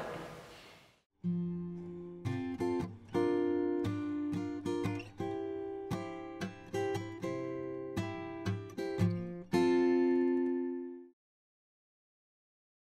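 Short instrumental jingle on acoustic guitar: a run of plucked notes and strummed chords, ending on a held chord that cuts off suddenly about a second before the end.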